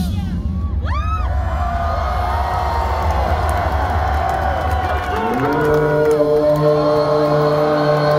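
Rock concert crowd cheering and whooping, many voices over a low rumble. About five seconds in, a steady held chord sets in and the crowd noise rises.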